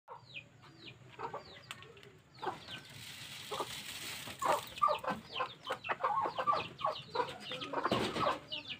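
Chickens clucking in a coop: a run of short clucks, denser and louder from about halfway through, mixed with high, quick falling chirps.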